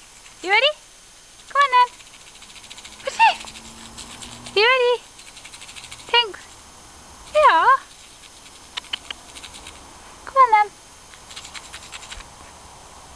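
Kittens meowing: about six short calls spaced one to three seconds apart, each bending up or down in pitch.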